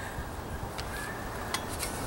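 A few faint metallic clicks as the sections of a 6-in-1 camp tool's handle and its shovel head are handled and fitted together.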